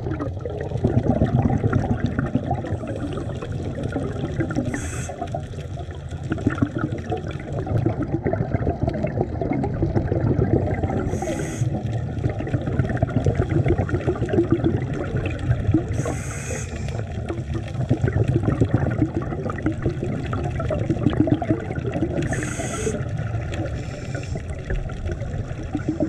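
Scuba regulator breathing recorded underwater: a short high hiss of inhalation about every five to six seconds, over a continuous low bubbling and crackling rumble of water and exhaled bubbles.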